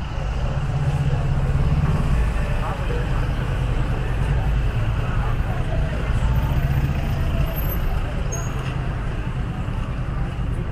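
Street traffic noise: a motor vehicle's engine running close by as a low, steady rumble that swells twice, with faint voices of people on the street in the background.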